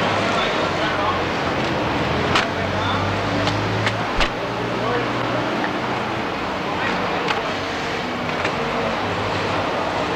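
A cardboard shipping case being torn open and its flaps pulled back by hand, with a few sharp clicks and snaps, the loudest about two and a half and four seconds in, over a steady low machinery hum.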